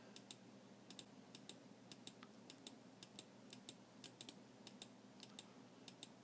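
Faint, irregular clicking of computer keys, some twenty light taps over a near-silent room hiss.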